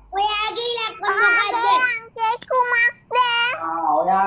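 A child singing a few short phrases in a high voice, holding some notes steady.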